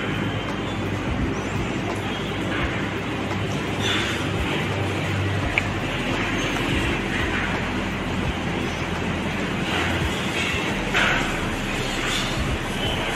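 A steady low background hum, with a few brief scrapes of a spatula against a stainless steel mixing bowl as thick brownie batter is scraped out into a baking tin.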